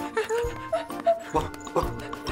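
Cartoon background music, with a cartoon dog's short vocal sounds over it.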